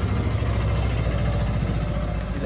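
An engine idling steadily with a low, even beat.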